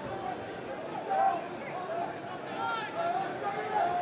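Football stadium crowd noise: a steady hum of many voices, with scattered individual shouts rising above it.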